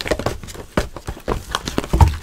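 A cardboard trading-card box and its plastic wrapper being handled: a quick, irregular run of taps, clicks and rustles.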